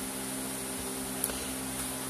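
Low steady hum and hiss of room tone, with one faint click a little past halfway.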